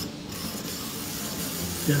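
Hand-cranked apple peeler-corer-slicer being turned, its crank driving the threaded shaft through the apple with a steady mechanical running noise as the blade peels the skin.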